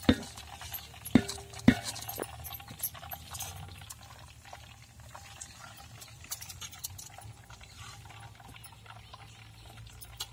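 Metal skimmer and ladles knocking and scraping against a large iron kadai and steel vessels while boondi fries, with three sharp metal knocks in the first two seconds, then lighter clinks. Faint sizzling of the frying oil runs underneath.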